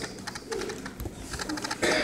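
Indistinct voices talking low in a small room, with a faint click about a second in and a sudden louder burst of sound near the end.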